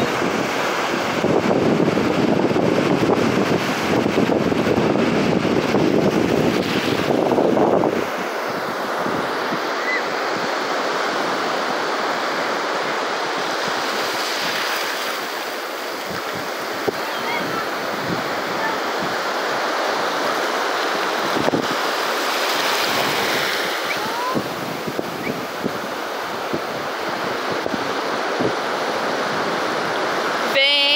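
Small waves washing up on a sandy beach in a steady hiss of surf, with wind on the microphone adding a low rumble for about the first eight seconds.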